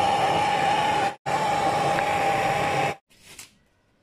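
Handheld gas torch flame hissing steadily with a constant whistle-like tone as it heats a copper refrigerator pipe joint for brazing. The hiss drops out for an instant about a second in and stops abruptly near the end, leaving faint rustling.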